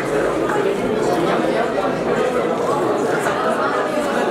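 Indistinct chatter of many people talking at once in a large hall, a steady babble with no single voice standing out.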